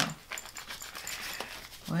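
A tarot deck being shuffled by hand, giving a few soft, irregular card clicks and rustles.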